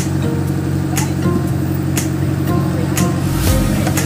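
Fishing boat's engine running steadily under background music with a steady beat, about two beats a second.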